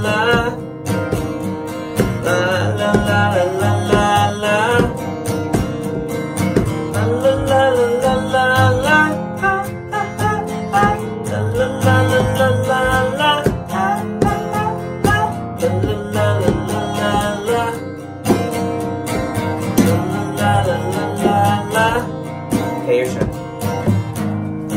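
Acoustic guitar strummed steadily, with a wordless sung melody over it.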